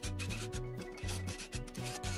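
A cordless DeWalt driver running screws into OSB board, a noisy rasping that comes and goes, over background music with a steady bass beat.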